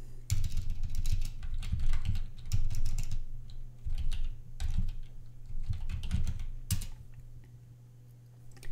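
Typing on a computer keyboard: a quick run of keystrokes for several seconds, ending with one sharper key press near the end, after which the typing stops.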